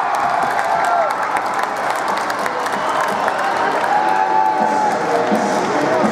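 Ice hockey crowd cheering and clapping, with many sharp clicks and a few long held notes over the noise.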